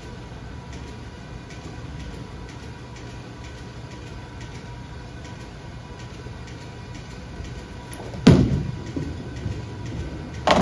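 Bowling-alley ambience of balls rolling on the lanes. About eight seconds in, one sharp, loud thud as a Storm Absolute reactive-resin bowling ball is released and lands on the lane, followed by the ball rolling away.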